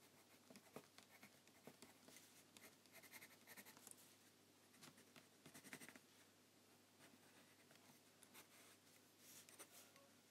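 Faint scratching of a wooden pencil drawing on sketchbook paper, in short, irregular strokes.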